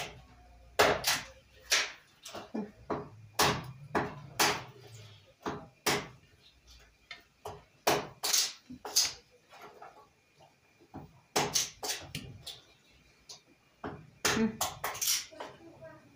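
Kitchen handling noise: a string of irregular sharp knocks and clacks, some loud, with quiet gaps between.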